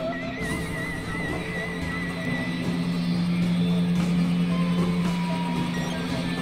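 Experimental synthesizer drone music. A high wavering tone sits over a noisy, hissing bed for the first couple of seconds, then a steady low drone comes in and holds, with a faint sliding tone near the end.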